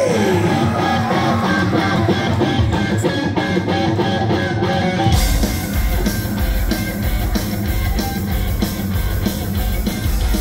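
Heavy metal band playing live through a PA: electric guitar alone at first, then drums and the low end of the full band come in about five seconds in.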